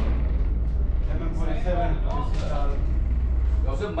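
Men's voices talking, muffled, over a low steady rumble that cuts off abruptly just before the end.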